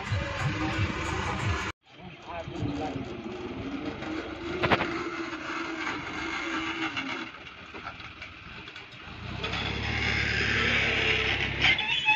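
Music for the first two seconds, cut off abruptly. Then tractor engines running with voices over them, and a closer, louder tractor engine running steadily over the last couple of seconds.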